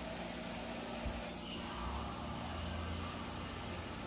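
Quiet, steady low background hum of room tone, with a soft click about a second in and a low rumble in the middle.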